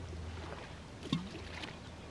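A thrown stone lands in the lake with a single sharp plop about a second in, over a faint steady background hum.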